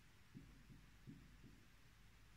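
Near silence with a few faint, soft low knocks about every half second: a marker pressing strokes onto a wall-mounted whiteboard.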